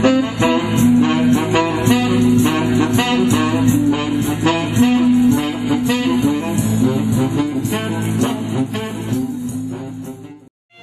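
Tenor saxophone playing a tango melody over a guitar-like plucked-string accompaniment. The music fades out near the end.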